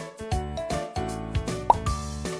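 Bouncy children's background music with repeated plopping bass notes, and a short rising bloop sound effect near the end.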